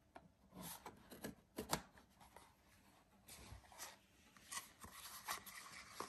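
A serrated kitchen knife slitting the seal of a cardboard screen-protector box, then the cardboard being handled: a string of faint scrapes, rubs and taps.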